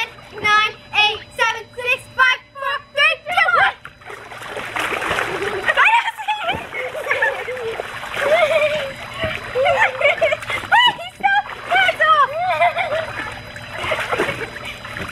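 Water splashing and sloshing in an inflatable backyard pool as several girls scramble through it, getting busy from about four seconds in, mixed with the girls' voices. Before that, short evenly spaced voiced calls, about three a second.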